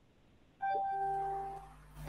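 Electronic two-note notification chime from video-call software: a higher note about half a second in, then a lower note, both ringing briefly and fading out before the end.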